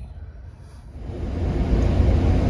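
Steady low rumble of a Freightliner Cascadia semi truck's engine and road noise inside the cab. It comes in loudly about a second in, after a faint quiet start.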